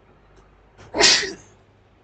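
A single short, loud, explosive burst of breath from a person, about a second in, with a faint sound just before it.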